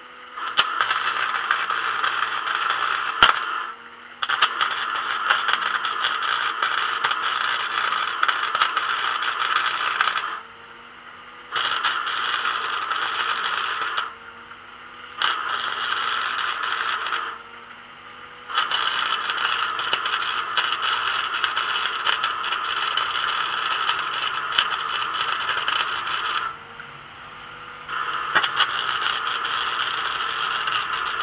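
Arc welding a steel brace onto a grill leg: the arc crackles and sizzles in about six runs of two to eight seconds each, stopping for a second or so between them. A sharp pop comes about three seconds in.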